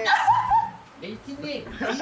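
A person's voice giving two short, high-pitched yelping sounds right at the start, followed by quieter talking.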